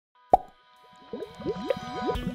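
Cartoon bubbling sound effects: a sharp pop about a third of a second in, then a held musical tone beneath a quick run of short, rising bubble plops.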